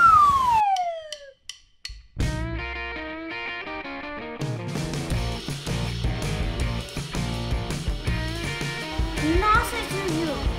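A long falling, whistle-like pitch glide, then a brief gap. Then cheerful background music with a melody begins, filling out with a steady bass beat about halfway through.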